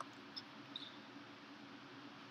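Quiet room tone with a low steady hum and a few faint computer mouse clicks, the first two near the start.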